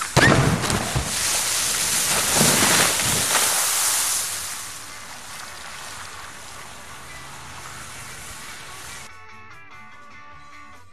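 Underwater detonation of a QSX-1 explosive cartridge in a water-filled barrel: a sharp blast at the very start, then a loud rushing splash as the thrown-up water column falls back onto the barrel and ground for about four seconds. The splash fades into a steady hiss that cuts off abruptly near the end.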